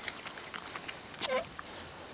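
Raccoon mouthing and biting a piece of hot dog close up: a run of small quick clicks and smacks. A brief pitched sound falls in pitch about a second and a quarter in.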